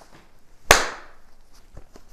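A single sharp slap about two-thirds of a second in, a small book being handled, likely snapped shut, followed by a few faint rustling ticks.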